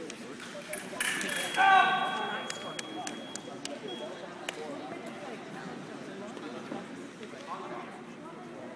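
Foil blades clash in a parry and riposte about a second in. An electric fencing scoring box then sounds a steady high tone for about two seconds as the riposte lands on target. A loud shout rises over it as the touch is scored.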